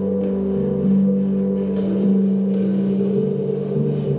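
Live jazz trio: bass clarinet holding long, low sustained notes that shift pitch every second or so, with piano and drums accompanying.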